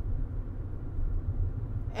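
Steady low rumble of a car on the move, heard from inside the cabin.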